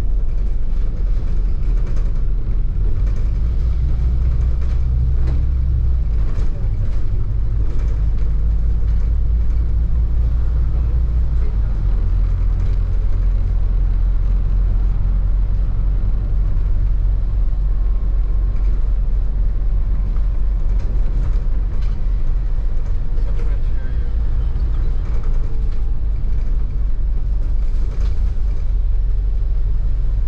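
Open-top double-decker bus under way, heard from the top deck: a steady low rumble of engine and road noise, with wind buffeting the microphone.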